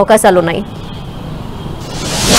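Speech breaks off about half a second in, leaving steady outdoor background noise from a live field microphone. Just before the end, a rising whoosh of a news-channel graphics transition begins.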